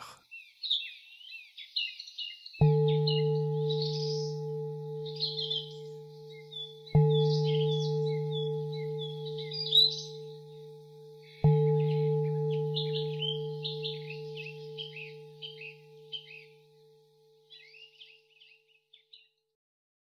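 A deep-toned bowl bell, of the singing-bowl kind, struck three times about four and a half seconds apart; each stroke rings on and slowly fades, and the last dies away about five seconds after it is struck. High bird chirping and twittering runs underneath until near the end.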